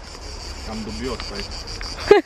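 A steady, high-pitched buzzing chorus of insects in woodland, unbroken throughout, with a faint voice briefly about a second in.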